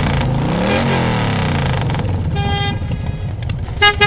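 Road traffic: vehicle engines whose pitch rises and falls as they pass, with a car horn tooting once about two and a half seconds in and a quick run of short toots starting right at the end.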